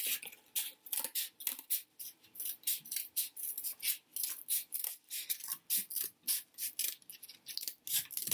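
Scissors cutting through thick cardboard: a steady run of short, crisp snips, about three a second, as a strip is cut off.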